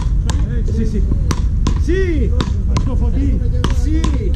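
Wooden beach-racket paddles hitting the ball back and forth in a rally: a string of sharp knocks, several in quick succession, roughly every half second to second.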